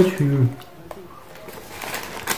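A man's voice trailing off in a falling, drawn-out syllable, then quiet room tone.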